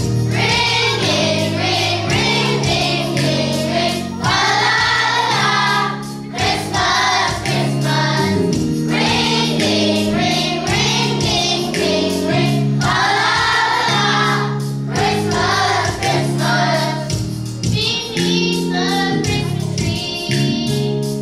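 Children's choir singing a song over steady instrumental accompaniment.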